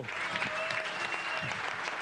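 A large audience applauding steadily, many hands clapping at once.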